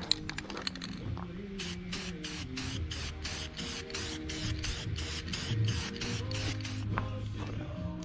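Aerosol spray paint can hissing in short, quick bursts, about four a second, starting about a second and a half in and stopping about a second before the end, over background music.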